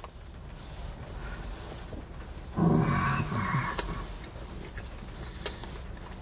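A man chewing a big mouthful of a double-patty burger, with a low hummed "mmm" of enjoyment about two and a half seconds in that lasts about a second.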